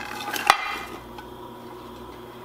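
Chopped onion, carrots and garlic tipped from a glass dish into a ceramic slow cooker crock, the pieces tumbling onto the potatoes, with one sharp clink about half a second in.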